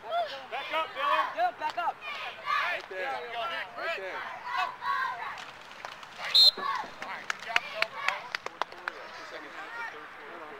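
Several voices call out, unintelligibly, during a youth football play. About six seconds in there is one short, sharp, high blast that fits a referee's whistle ending the play. After it comes a quick run of sharp clicks and knocks.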